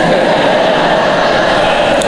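A congregation laughing together in a reverberant church, a steady wash of many voices with no single voice standing out.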